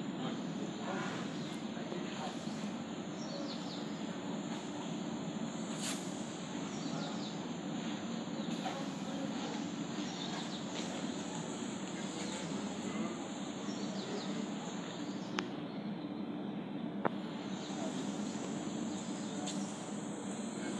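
Outdoor background ambience: a steady low hum and murmur with short high chirps repeating about once a second, and two sharp clicks in the second half.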